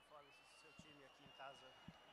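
Near silence: faint background voices, a faint steady high-pitched tone, and a few soft knocks.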